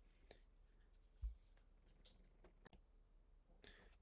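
Near silence: room tone with a few faint clicks and one soft low thump about a second in.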